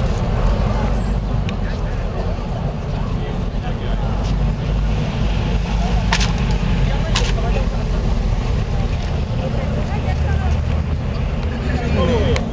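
Roadside traffic ambience: a steady low rumble of bus and vehicle engines running, under the chatter of a crowd of voices. Two short sharp knocks about six and seven seconds in.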